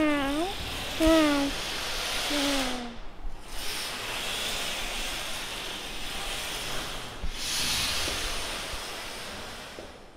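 A child's voice makes short gliding vocal sound effects and a cough-like "uh" in the first few seconds, then a long breathy hiss in two swells that fades away near the end.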